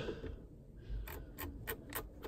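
A quick series of faint clicks, about six in the second half, from the G63's centre-console controls being worked to turn the sound system's volume down.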